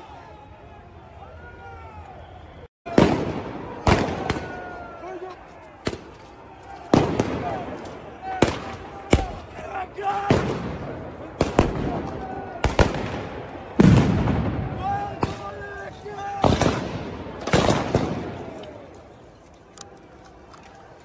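A run of loud explosive bangs, about a dozen over some fifteen seconds starting about three seconds in, each echoing off the buildings, amid a shouting crowd.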